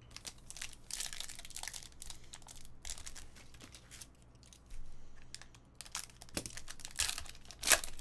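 Foil trading-card pack wrapper crinkling and tearing as it is opened by hand, in an uneven run of crackles, with the loudest crackle just before the end.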